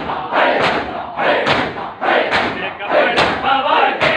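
Matam: a large crowd of men striking their chests with open hands in unison, a sharp slap roughly every second, with the many voices of the crowd filling the gaps between the beats.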